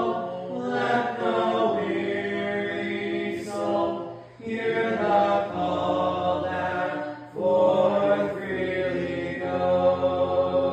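Congregation singing a hymn together, the invitation song, in long held phrases with brief breaks for breath about four and seven seconds in.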